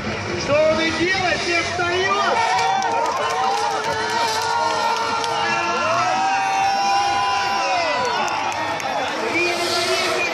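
Drift cars' engines revving up and down through a tandem drift, their pitch rising and falling in long sweeps, over crowd noise and a voice.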